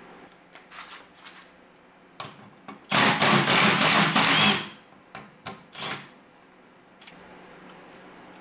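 Milwaukee cordless driver running in one burst of about a second and a half, turning a screw in a Jeep's tail light housing. Light plastic clicks and taps come before and after.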